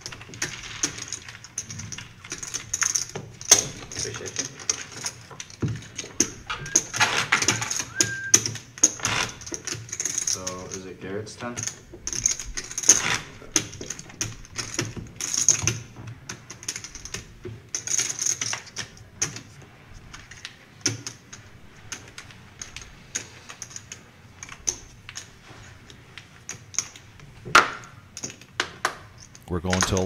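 Poker chips clicking and clacking in quick, irregular runs as players stack, shuffle and push them across the table.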